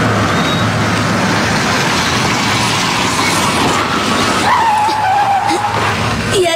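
Cartoon sound effect of a car driving up, its engine a steady low hum under road noise, then braking to a stop with a tyre squeal that starts about four and a half seconds in and holds for over a second.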